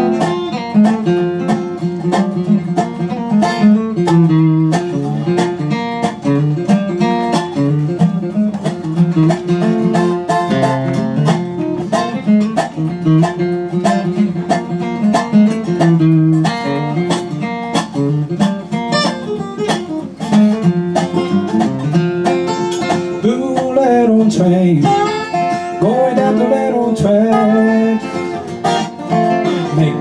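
Bluegrass instrumental: an acoustic guitar strummed under a resonator guitar (dobro) played lap-style with a steel bar. The dobro's notes slide in pitch near the end.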